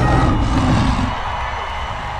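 Sound effect for the animated logo at the close: a dense, rumbling wash that follows a sudden hit just before and gradually fades away.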